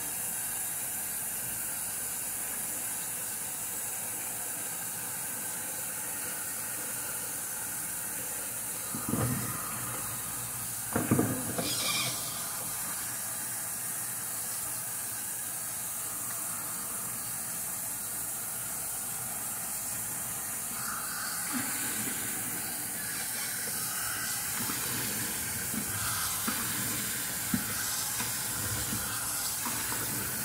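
Bathroom sink tap running steadily while water is splashed onto a face by hand, with two louder splashes a little before the midpoint and busier splashing in the last third.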